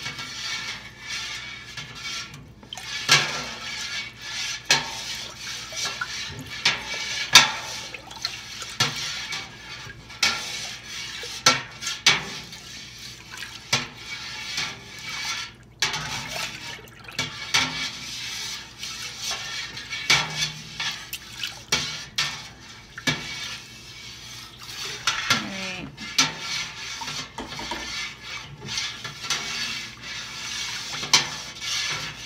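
A metal spoon stirs warm milk slowly in a large stainless steel stockpot, mixing in rennet for mozzarella. The milk swishes, and the spoon knocks and scrapes against the pot in irregular clinks.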